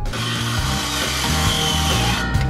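Skilsaw worm-drive circular saw cutting through a wooden board, a steady whir of the blade in the wood, over background music.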